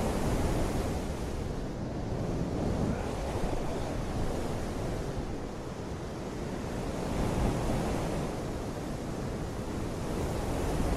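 Steady rushing wind with slow swells, rumbling low on the microphone.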